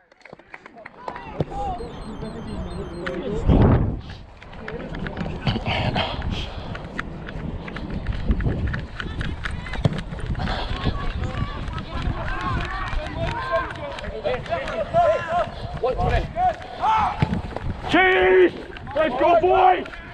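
Rugby referee's running footfalls on an artificial-turf pitch, picked up close by a body-worn camera as a steady run of thuds with clothing rustle. Players' shouts come and go, busiest in the second half.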